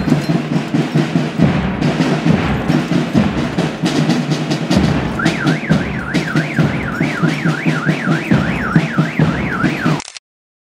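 Procession drums beating steadily and loudly. From about halfway, a warbling electronic alarm tone joins them, rising and falling about three times a second.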